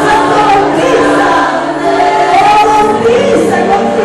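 Two women singing a Christian worship song together into microphones, amplified through the hall's sound system, with long held notes.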